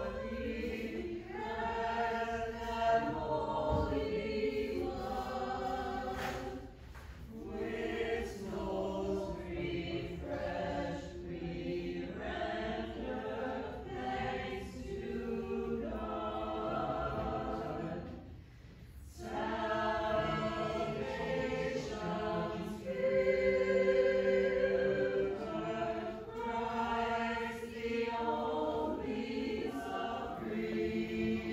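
Choir singing a hymn phrase by phrase, with short breaks between phrases about six seconds in and again a little past the middle.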